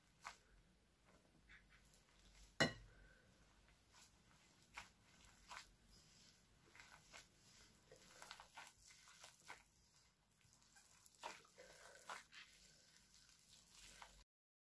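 Mostly near silence, with faint rustling and soft taps from a gloved hand kneading flour into a soft biscuit dough in a glass bowl, and one sharper knock about two and a half seconds in.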